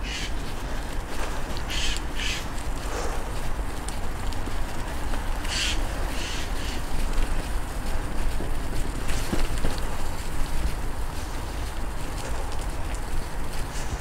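Steady rumble and hiss of a bicycle being ridden along a rough, muddy dirt path: tyre noise and wind on the microphone, with a few short scratchy bursts about two and six seconds in.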